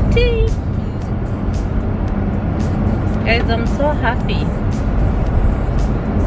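Car cabin road noise, a steady low rumble from the moving car, with music playing and a voice singing in short snatches over it, once near the start and again a few seconds in.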